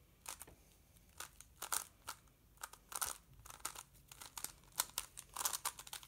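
Plastic stickerless megaminx being turned quickly by hand: irregular clacking of its faces, several clicks in quick flurries with short pauses between.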